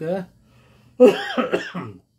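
A man gives a short voiced cough, clearing his throat, about a second in after a brief pause. It starts abruptly at full strength and dies away.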